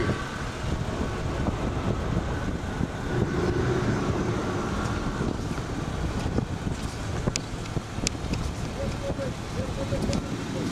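Low, steady rumble of a car rolling slowly along the road, with wind on the microphone.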